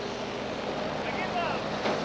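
Steady background noise at a rescue site in the rubble of a collapsed building, with faint distant voices calling about a second in.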